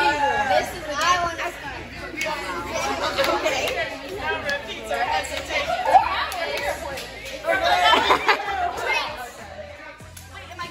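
Several young women talking and chanting over one another while playing a hand-slapping game, with a few sharp hand slaps, the loudest about six seconds in.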